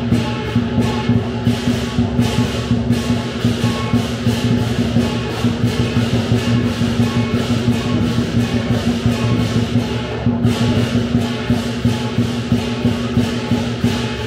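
Lion dance percussion: the big drum, cymbals and gong keep up a steady, loud beat, with sharp cymbal clashes several times a second over a low ringing. The cymbals drop out briefly around ten seconds in.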